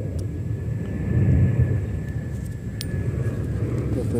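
Low background rumble of distant engine noise, swelling a little over a second in, with a faint steady high whine running through most of it.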